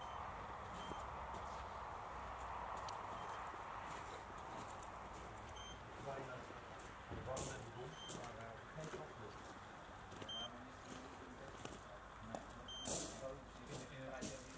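Faint, muffled talking, with a short high electronic beep repeating about every two seconds. A steady rushing noise fills the first few seconds.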